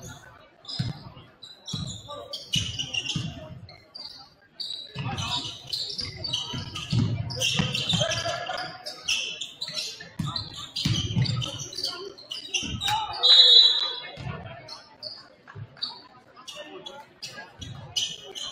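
A basketball dribbled on a hardwood gym floor, in irregular bounces, echoing in a large gym.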